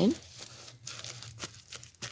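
Fingers pressing and firming a sand-and-clay soil mix around a freshly potted succulent: a run of short, irregular crackles and rustles.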